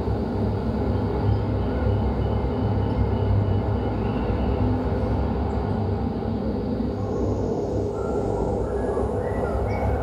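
Field recording of unending road traffic played back in a hall: a steady, dense rumble with no lull. A few short high tones sound over it in the second half.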